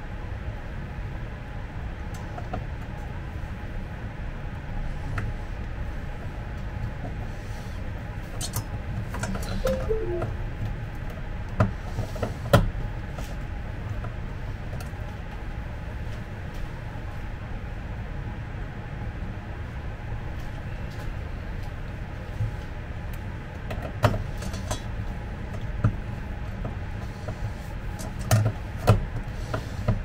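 Clicks and knocks of a metal drawer runner and screws being handled against a chipboard cabinet panel, over a steady low room hum. A few sharper knocks come about a third of the way in and several more near the end.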